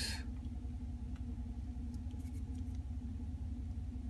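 Steady low hum inside a truck cab, with a few faint small clicks and scratches as fingers pick at a wax queen cell to open it.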